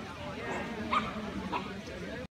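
A dog giving short, sharp yips, about three in two seconds, over the murmur of people talking.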